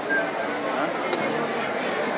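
Indistinct talk of several people, voices overlapping without clear words, with one short tick about a second in.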